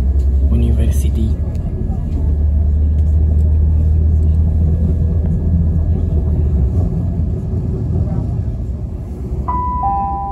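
Passenger train running at speed, heard from inside the carriage: a steady low rumble that eases off after about seven seconds. Near the end a two-note chime sounds, the second note lower, the on-board signal that a station announcement is about to follow.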